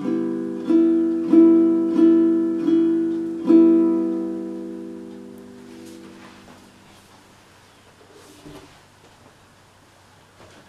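Baritone ukulele tuned DGBE, strummed six times on the same chord at about one strum every two-thirds of a second, then left to ring and die away over a few seconds.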